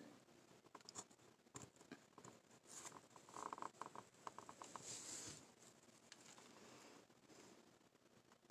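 Faint knife cuts in basswood: a small carving knife slicing and scraping off thin shavings in short strokes with light clicks, a little louder about halfway through.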